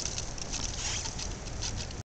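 Light rain pattering in soft, irregular ticks over a low, steady rumble.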